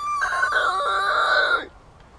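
A rooster crowing once, a rising start held for about a second and a half before breaking off.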